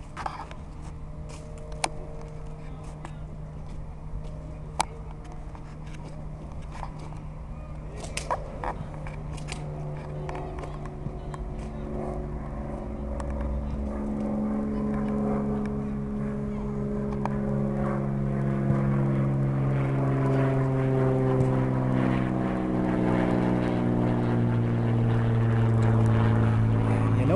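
A distant engine drone at one steady pitch with several overtones, growing gradually louder. A few sharp knocks come in the first ten seconds.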